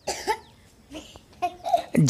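A single short cough at the start, followed by faint throat and mouth sounds.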